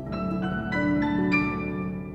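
Sampled orchestral mock-up of harp and marimba eighth notes with piano and celesta doubling the top notes in quarter-note triplets; a few higher notes enter in the first second and a half, then the chord rings and fades near the end as the excerpt finishes.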